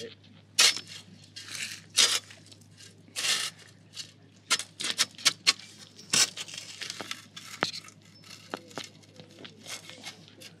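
A steel shovel cutting and scraping into dry, grassy soil: a series of short, irregularly spaced scrapes and crunches as the blade is driven in and levered out.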